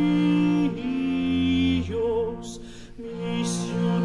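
Spanish Renaissance song played by an early-music consort: long held notes on bowed strings over a low sustained bass note, the melody moving in slow steps, with two short breathy hisses in the second half.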